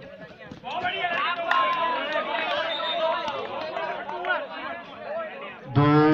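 Many voices shouting over one another, rising about a second in, as spectators and players call out during play; a louder man's voice on the PA comes in near the end.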